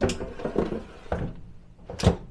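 Ninja Flex Drawer air fryer drawer slid back into its housing: a knock as it goes in, scuffing as it slides, another knock about a second in, and a sharp click as it seats at the end.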